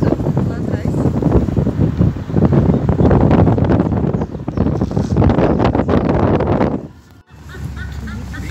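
Loud, rough wind noise buffeting a phone microphone from a moving car, breaking off suddenly about seven seconds in.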